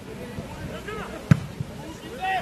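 A football being kicked: one sharp thud about a second in, the loudest sound here, with a fainter knock just after. Players' shouts carry across the pitch around it.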